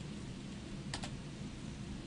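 Computer keyboard keystrokes: a faint tap at the start and a sharper double click about a second in, as the command is finished and entered. A steady low hum runs underneath.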